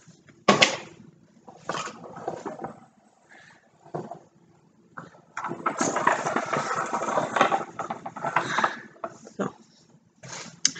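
Handling noise: a sharp knock about half a second in as the hot glue gun is set down on the stone countertop, then a few seconds of rustling and light knocks as the tulle-skirted centerpieces are moved and set down on the counter.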